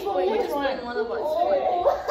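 Speech only: a woman and a young boy talking, overlapping chatter.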